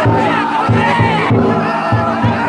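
A festival float's taiko drum beating in a steady rhythm, about three strokes a second, under the loud group shouts and chanting of the men carrying it.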